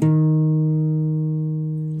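Nylon-string classical guitar with a capo: a single bass note of a bass run plucked at the start and left ringing, slowly fading.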